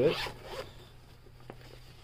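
Zipper on a fabric laptop bag being pulled open: a short raspy run in the first second, then a light click about a second and a half in.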